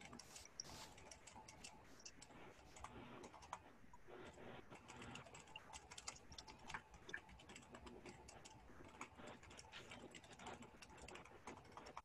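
Faint typing on a computer keyboard: irregular, quick key clicks with short pauses between runs.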